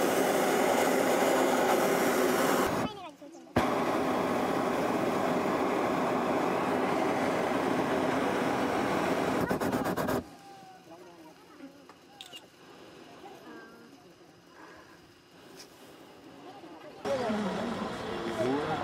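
Hot air balloon's propane burner firing in two long blasts, one of about three seconds and one of about six and a half, each cutting off suddenly. After the blasts come faint voices, then a louder stretch with voices near the end.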